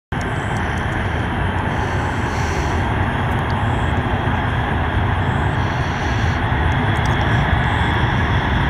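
B-52 bomber's eight jet engines at takeoff power during its takeoff roll: a steady, deep, dense jet noise that slowly grows louder as the aircraft comes down the runway.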